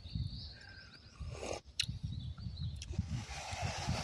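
Someone eating cup noodles, slurping the soup and noodles, with a couple of light clicks and a longer slurp near the end. A low irregular rumble sits underneath on the microphone.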